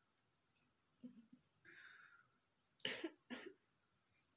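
A man coughing twice, two short coughs about half a second apart near the end, against near silence.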